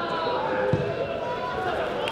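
Footballers shouting over one another in a crowded goalmouth during a set piece, with a crowd behind them. A dull thud of the ball being struck comes just under a second in.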